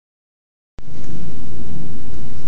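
Loud, low rumbling noise on a phone's microphone as the phone is handled and swung into position. It starts abruptly under a second in and holds steady.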